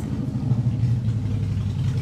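A car engine running close by: a low, steady rumble that grows louder about half a second in and holds.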